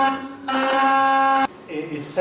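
Modified radio cassette player sounding a loud, steady electronic buzz with a fixed pitch and a stack of overtones. A thin high tone sits on top of it for the first half second. The buzz cuts off suddenly about a second and a half in.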